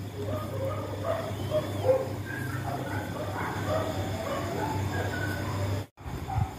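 A dog whimpering in many short, high calls over a steady low hum.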